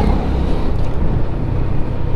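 TVS Stryker 125cc motorcycle's single-cylinder engine running at a steady cruising speed, with wind rushing over the microphone as a steady low rumble.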